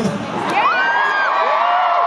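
Large arena crowd cheering and screaming. Piercing high-pitched screams from fans close to the microphone rise about half a second in and are held.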